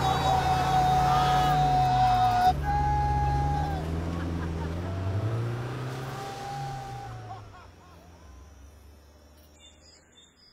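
A car engine revving up and down as it drives off, with long whooping voices held over it, the whole sound fading away over the next few seconds. Faint bird chirps come in right at the end.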